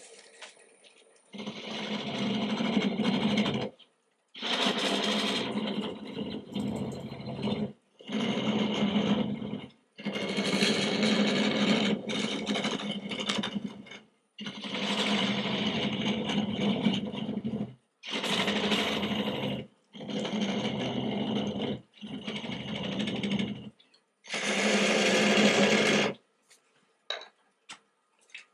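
Wood lathe spinning a spalted aspen vase, with a turning tool cutting at the narrow neck near its base. It comes in about nine short stretches, each broken off by an abrupt silence.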